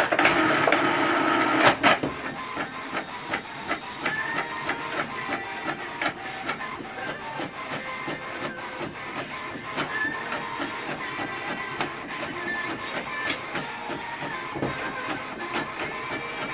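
HP Envy 6030 inkjet printer making a colour copy. Its motor noise is louder for about the first two seconds, then settles into rapid clicking with brief motor whines as it feeds and prints the page.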